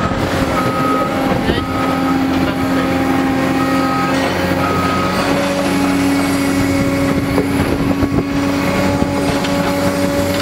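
Large demolition excavator's diesel engine running steadily close by, with a machine's warning alarm beeping about once a second through the first five seconds.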